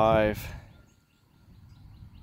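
A man's voice finishes a short spoken reading, then a quiet outdoor background. In the second half a small bird starts a faint, quick series of short rising chirps.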